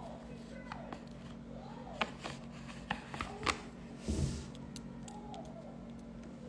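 Wooden chopsticks clicking: several sharp clicks between about two and three and a half seconds in, then a brief louder rustling knock about four seconds in, over a low steady hum.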